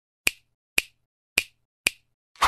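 Four sharp snap-like clicks, about half a second apart, a sound effect for an animated title.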